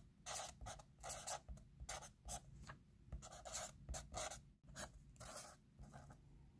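Permanent marker writing on paper: a quick run of short, faint strokes with brief pauses between them.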